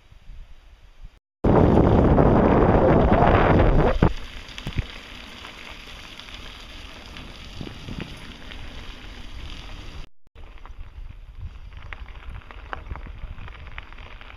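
Wind buffeting the microphone of a camera carried along on a bicycle ride, very loud for about two and a half seconds from a second and a half in, then a lower steady rush with scattered ticks and rattles. The sound drops out abruptly twice where the clips are cut together.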